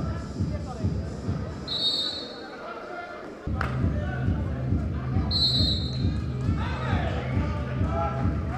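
A drum beating a fast, steady rhythm of about four beats a second over crowd voices, with two short, shrill referee's whistle blasts, one about two seconds in and one a little after five seconds.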